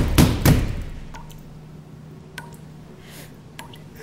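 Banging on a closed door: a few heavy blows in the first half-second that die away. Then three faint water drips from a tap, a little over a second apart, over a low steady hum.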